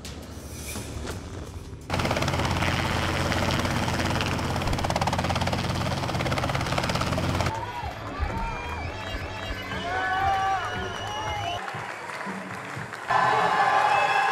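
Background music with steady low notes. About two seconds in, a loud rushing noise comes in and lasts about five seconds. It gives way to voices cheering and whooping, with a louder burst of cheering near the end.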